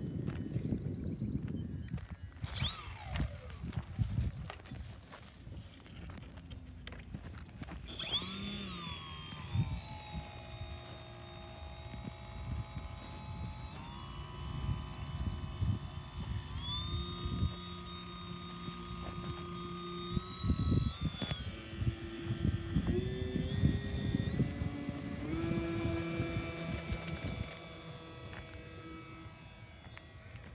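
Electric motor and propeller of a radio-controlled model floatplane whining. The pitch falls as it passes a couple of seconds in, then holds and steps up and down several times with throttle changes.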